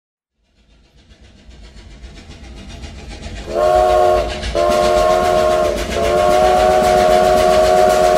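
Train sound effect opening a song's backing track: a low rumble that grows louder for about three seconds, then a multi-note train horn sounding three blasts, the third one long.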